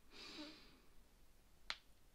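Near silence: a soft breathy exhale near the start, then a single sharp click about a second and a half in.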